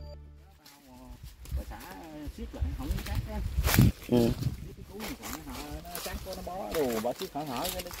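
Intro music cutting off in the first half second, then indistinct voices of people talking. A sharp knock a little before four seconds in is the loudest sound.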